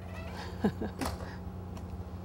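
A few short, falling vocal sounds, a brief laugh, about half a second to a second in, over a steady low hum.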